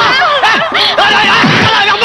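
Several voices laughing and crying out over one another in quick, rising-and-falling bursts.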